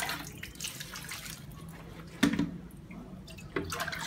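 Water splashing as it is scooped with a plastic bowl and poured over a cloth on a concrete washboard sink, with a louder splash a little past halfway and another near the end.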